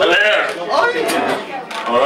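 A man's voice speaking, the words indistinct.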